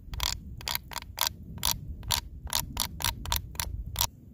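A stick rubbed across the teeth of a cow jawbone, played as a rasp-like rattle: a quick, uneven run of dry clicks, about five a second, as the stick catches on tooth after tooth.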